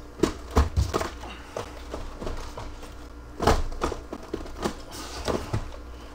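Handling noise from cardboard hobby boxes and the camera being moved: a string of irregular knocks and taps, the loudest about halfway through.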